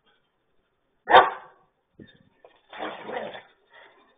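German shepherd barking in play: one loud bark about a second in, then a longer, rougher stretch of barking a little before three seconds, and a short sound near the end.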